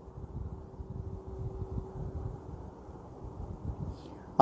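Faint low background rumble with a faint steady hum that fades out about halfway through.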